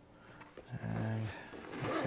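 Zipper being pulled open along a padded nylon pistol case, a raspy run that grows louder toward the end.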